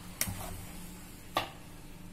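Two sharp taps a little over a second apart: a plastic spoon knocking against a stainless steel sink while cleaning paste is dabbed on.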